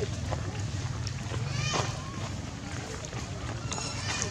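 Faint voices over a steady low hum, with a brief shrill call about a second and a half in and a thin high squeal near the end.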